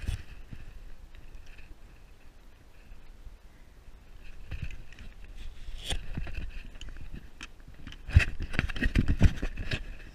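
Handling noise from a hand-held wide-angle camera: scrapes, clicks and knocks as fingers grip and shift it, with a run of heavier low bumps near the end.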